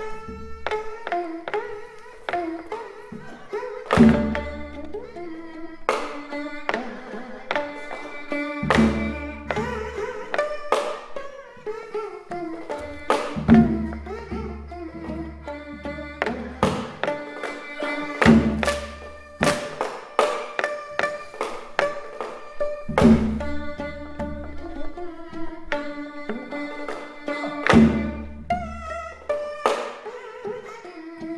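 Korean traditional instrumental music accompanying a dance: string instruments playing a slow melody with sliding notes and plucked strokes, over a deep drum stroke about every five seconds.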